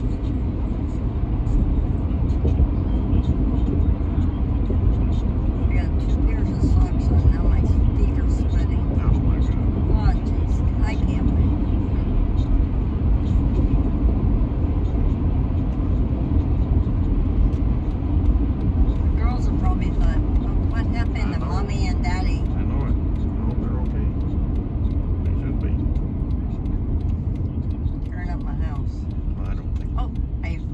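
Steady road noise inside a moving car: a low, continuous rumble of engine and tyres on the road.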